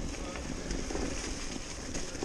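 Cube Stereo Hybrid 160 electric mountain bike rolling along a leaf-covered dirt trail: steady tyre and trail noise with faint ticks and rattles, and a low wind rumble on the microphone.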